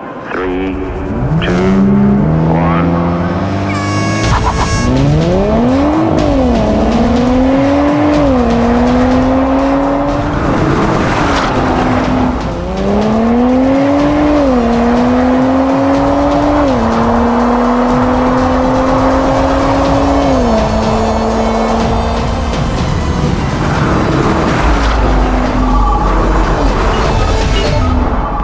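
Nissan Z twin-turbo V6 engines at full throttle in a drag race, the revs climbing in long rises and dropping sharply at each upshift through several gears. The engine note is heard over background music.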